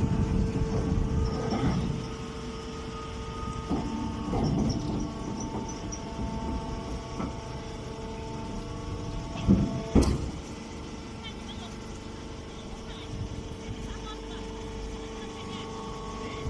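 Hydraulic grass baler's power unit running with a steady hum, louder for the first couple of seconds and then settling lower. A sharp knock sounds about ten seconds in.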